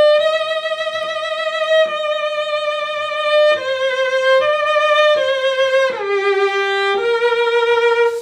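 Solo cello played high in its range: a slow melody of long bowed notes, each with a fast, narrow, tense vibrato that makes the pitch waver quickly. The pitch steps down a few times in the second half and lifts again near the end.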